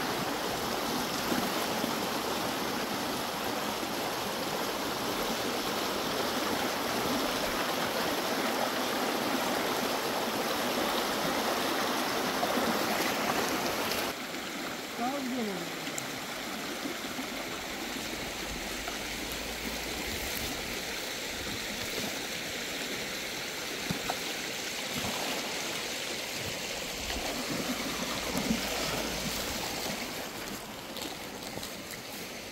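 Shallow rocky stream rushing over stones in a steady hiss. About halfway through it drops suddenly to a quieter flow.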